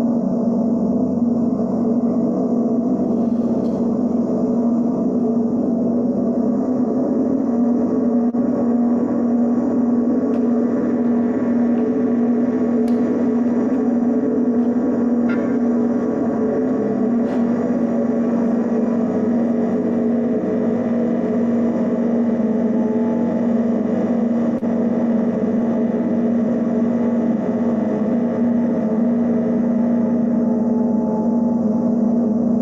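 Live electronic drone music played on keyboards and electronics: a steady, unbroken low hum made of several layered held tones.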